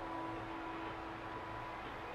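Steady room hiss with a faint held tone underneath that fades out near the end.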